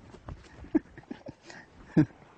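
Lions making several short, low calls at close range, each falling in pitch, the loudest right at the end.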